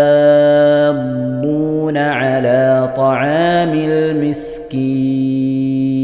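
A male voice reciting the Quran in melodic tajweed style. A long held note runs for about the first second, then come ornamented rises and falls in pitch, then another long held note from near the five-second mark.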